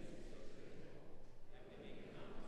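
Faint speech, quieter than the spoken parts of the service.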